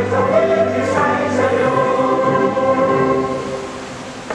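A choir singing a slow song in long held notes, dying away near the end.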